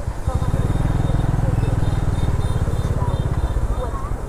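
A small motorbike engine running close by, a steady, evenly pulsing low sound, under faint chatter from the market.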